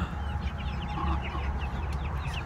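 A flock of young chickens calling in many short, quick notes while they feed, over a steady low rumble.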